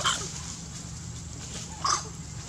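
Baby macaque giving two short high-pitched cries, one right at the start and one near the end, over a low steady background rumble.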